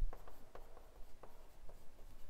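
Chalk writing on a blackboard: several short, light taps and scratches of the chalk stick against the board as figures are written.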